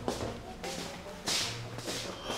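A few quick swishing sounds, the loudest about a second and a quarter in.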